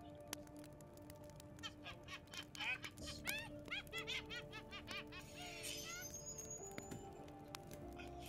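Faint TV episode soundtrack playing back: sustained music notes throughout, with a quick run of high, curving chirps through the middle few seconds.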